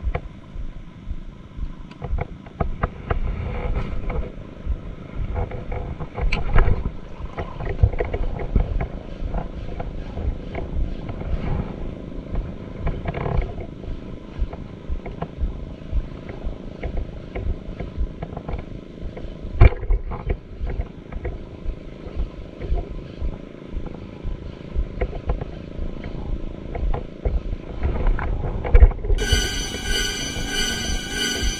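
Wind buffeting an action camera's microphone in uneven low gusts, with a few sharper knocks on the mic, about six seconds in and again near the middle. Music comes in about a second before the end.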